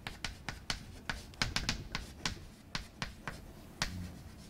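Chalk writing on a blackboard: a run of sharp, irregular taps and clicks, several a second, as the chalk strikes and strokes the board.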